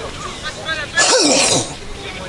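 A person's short, loud, breathy vocal burst about a second in, sliding down in pitch over about half a second, with faint talk just before it.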